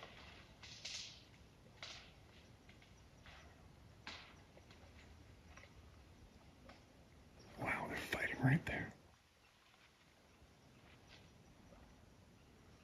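Branches snapping in the forest as a large bull breaks limbs off trees: a few faint cracks in the first seconds, then a louder cluster of cracks and crunches about eight seconds in.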